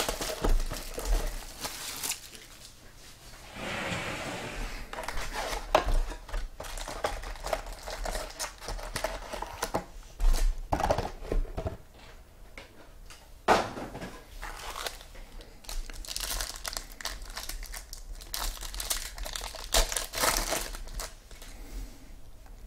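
Plastic shrink wrap being torn off a trading-card box and crumpled, then foil card packs crinkling as they are handled and torn open, in irregular bursts of crackling and rustling.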